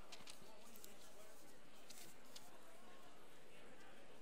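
Quiet hall ambience: the faint rustle and murmur of a seated audience writing on sheets of paper, with a few soft ticks in the first couple of seconds.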